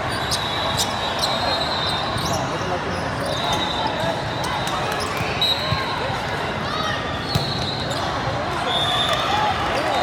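Steady chatter of many voices echoing in a huge hall of volleyball courts, with sharp thuds of volleyballs being hit during a rally and several short, distant referee whistles from the surrounding courts.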